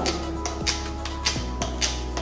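Strong glue of a disposable sanitary pad's adhesive layer being peeled apart, giving a series of irregular crackles.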